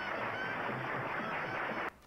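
Soundtrack of an old black-and-white film clip of a dancer performing with a band: noisy, hissy old band music with a few short held notes, which cuts off abruptly near the end.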